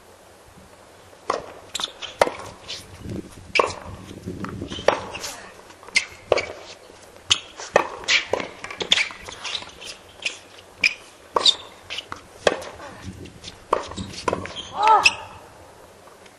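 Tennis balls struck by rackets and bouncing on a hard court during a doubles rally: a run of sharp pops, roughly one every half second to a second, starting about a second in. Near the end comes a brief, loud, high-pitched squeal.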